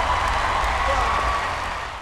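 Studio audience applauding and cheering, fading down near the end.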